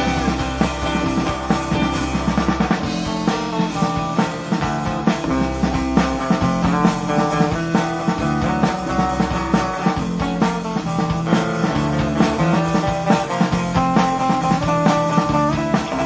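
Live rock band playing an instrumental passage: acoustic guitar over bass guitar and drum kit, with a steady beat.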